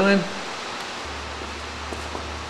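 Steady background hiss, with a low steady hum coming in about a second in.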